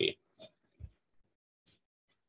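A man's voice finishing a spoken word, then quiet with two faint, brief breath- or throat-like noises.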